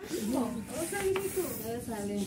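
Women's voices talking in the open, with no clear words, over a light background hiss.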